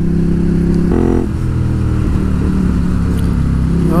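Ducati Hypermotard 821's L-twin engine running under way as the motorcycle is ridden, heard from a mount on the bike. The engine note is steady, with a brief change in pitch about a second in.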